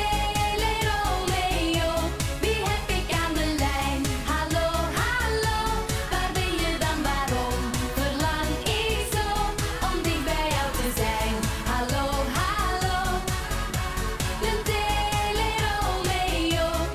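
Female pop vocal group singing a Dutch-language song into microphones over a dance-pop backing track with a steady, driving beat, in a live stage mix.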